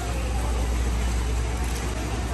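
Steady low rumble and hiss of background noise in a large store, with no clear voices.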